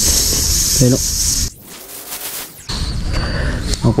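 Air hissing at a bicycle tyre, a steady high hiss that cuts off about a second and a half in, over a low outdoor rumble.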